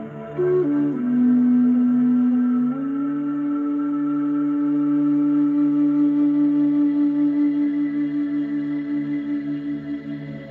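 Large wooden Native American-style flute playing a slow melody over a steady low ambient drone: a few short notes stepping down, then one long held note from about three seconds in, pulsing with vibrato toward the end.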